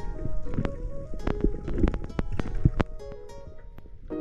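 Background music with held notes, over irregular sharp clicks and knocks that are thickest in the first three seconds.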